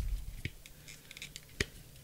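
Handling of trading cards and a rigid plastic card holder: a low bump at the start, then two sharp plastic clicks, the louder one about a second and a half in.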